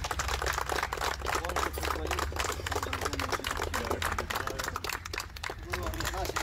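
A small group clapping: dense, uneven clicks that keep up throughout, with voices underneath.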